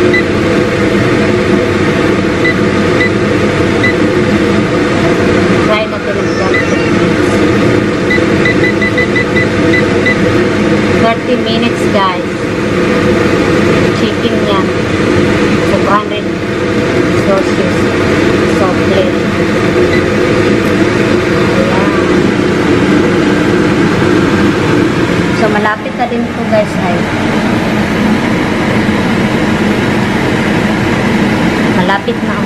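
An electric air fryer runs with a steady fan hum. Series of short high beeps come from its touch panel as it is set to 200 °C, near the start and again about eight to ten seconds in.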